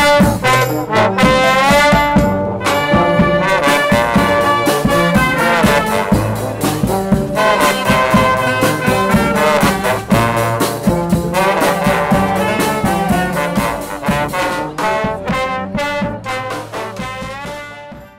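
Brass band (fanfare) with trombones and trumpets playing a lively tune over percussion, fading out over the last few seconds.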